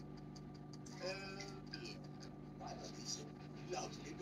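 Faint, indistinct voice in short snatches over a steady low hum.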